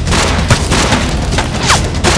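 Movie gunfire sound effects in a running firefight: a string of booming shots a few times a second, with a short falling whistle like a ricochet near the end.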